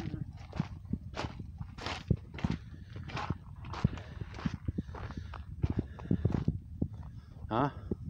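Footsteps crunching on a gravel and dirt track at a steady walking pace, about one and a half to two steps a second.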